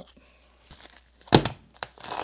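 Handling noise on a workbench: faint rustling, then a single loud thump, as of an object set down on the mat, followed by a small click. Packing paper begins to crinkle as it is unwrapped right at the end.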